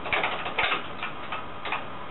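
Keys clicking on a BBC Micro keyboard as a command is typed: a string of separate keystrokes at an uneven typing pace.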